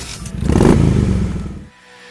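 Motorcycle engine revving, swelling up and dropping back, then cutting off abruptly shortly before the end.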